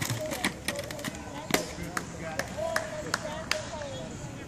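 Distant voices of spectators and players, with scattered sharp clicks and taps throughout.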